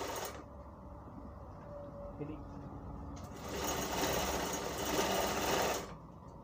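A sewing machine running a seam through cloth: a short burst at the very start, then one steady run of stitching from about three seconds in that stops abruptly near the end.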